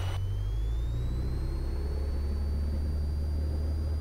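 Cessna 172 Skyhawk II engine and propeller coming up to takeoff power: a steady low drone, with a faint whine that rises in pitch over the first second and a half and then holds as the revs settle.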